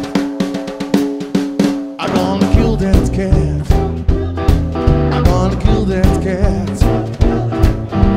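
Live blues band playing an instrumental passage with drum kit (snare and rimshots), upright bass, electric guitar and keyboard. For the first two seconds the bass drops out, leaving a held note over ticking drums, then the full band comes back in about two seconds in.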